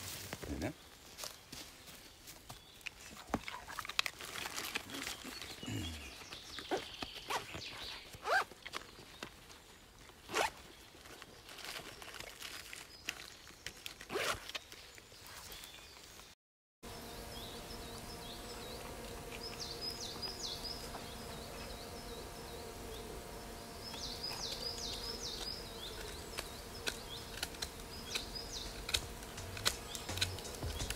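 Backpack zipper pulled in short strokes, with rustling, clicks and knocks as the pack is opened and rummaged through. After a break about halfway through, quieter high chirping comes in short bursts over steady sustained tones.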